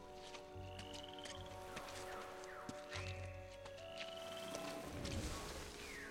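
Quiet film score of held, sustained chords over jungle sound effects: two short high trilling animal calls and two low rumbles.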